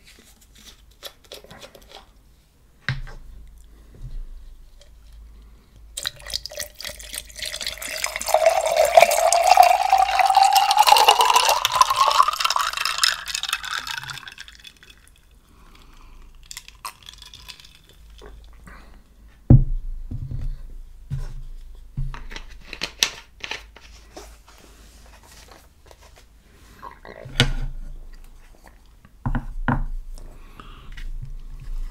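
Water poured from a plastic bottle into a glass of ice for about eight seconds, the pitch rising steadily as the glass fills. Later come a few short knocks and clinks of the glass and ice.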